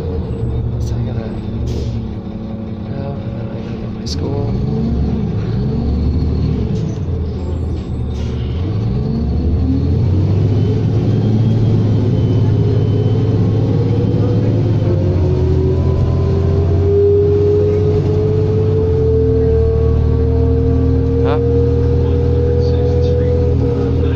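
Cabin sound of a 2003 New Flyer D40LF diesel city bus under way: the engine's pitch rises and falls several times in the first ten seconds, then settles into a louder steady drone. In the second half a whine climbs slowly in pitch.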